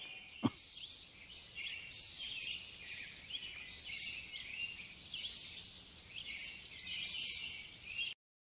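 Outdoor nature sound of small birds chirping over a steady high insect hum, thin and with no low end. A short knock comes about half a second in, and the chirping grows louder near the end.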